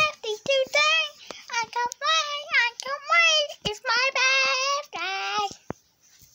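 A child singing in a high voice, phrase after phrase, breaking off shortly before the end.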